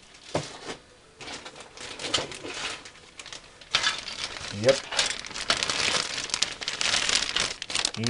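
Clear plastic bags crinkling as the model kit's bagged parts are handled, fainter at first and getting louder from about halfway through as a bagged plastic parts tree is picked up.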